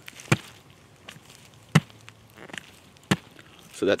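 Three short, sharp knocks about a second and a half apart, with little else between them.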